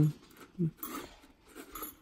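A short low hum-like voice sound, much like a brief 'hm', about half a second in, just after a long hummed 'um' dies away. Faint light handling sounds follow as the toy wands are held and turned.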